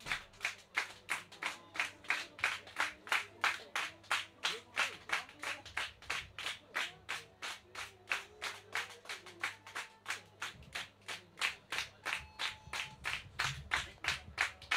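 Club audience clapping in unison at a steady rhythm of about three claps a second, calling the band back for an encore.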